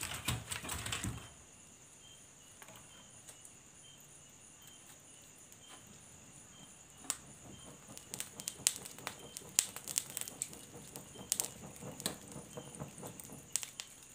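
Hand pushing a log into a wood-fire hearth under a cooking pot, a short rustling, knocking scrape in the first second, then quiet; from about seven seconds in come many irregular sharp crackles and clicks from the burning wood and handling beside the fire. A steady high chirping runs underneath.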